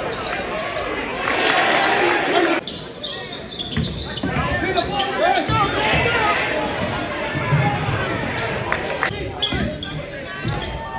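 Live court sound of a basketball game in a gym: the ball bouncing on the hardwood, short squeaks and voices from players and crowd. The sound changes abruptly a little under three seconds in.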